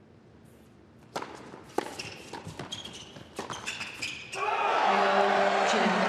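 Doubles tennis rally on an indoor hard court: sharp racket strikes on the ball in quick succession. About four seconds in the point ends and the crowd bursts into loud cheering and shouting.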